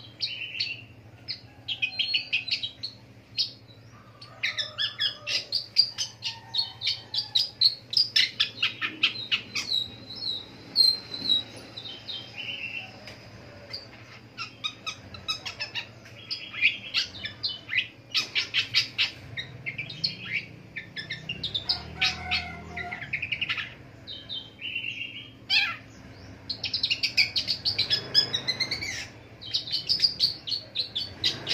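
Caged long-tailed shrike (pentet) singing a long, varied song of rapid chirps and trills, in quick runs broken by short pauses.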